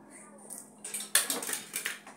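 Water splashing in a large plastic basin, with a plastic scoop knocking and clattering against it. It starts about half a second in and is loudest from just over a second in.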